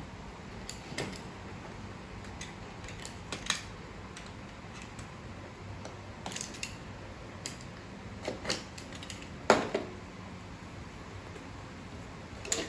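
Scattered scratches and clicks of a small cutting tool slicing the tamper-seal sticker on a cardboard phone box, with the sharpest click about nine and a half seconds in.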